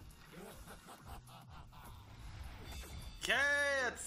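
Faint soundtrack from an animated video, then near the end a loud voice whose pitch rises and falls.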